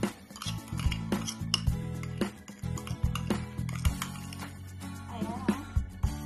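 Metal spoon clinking several times against a ceramic mug while scooping thick whipped coffee foam, over steady background guitar music.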